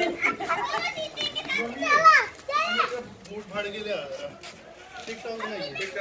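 Children's voices talking and calling out while playing, with a loud high voice sliding up and down in pitch about two seconds in.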